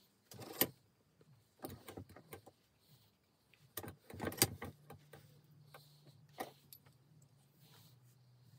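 Bursts of metallic clicking and rattling as a reassembled Sturmey-Archer AG 3-speed hub is turned and handled. The clicks come in three short clusters, loudest about half a second in and again about four and a half seconds in, and a single click follows later. A faint steady hum starts about halfway through.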